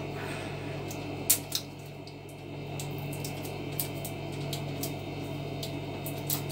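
Plastic spice jars being handled and shaken over a stainless steel pan, giving two light clicks about a second and a half in and a few fainter ticks later, over a steady low hum.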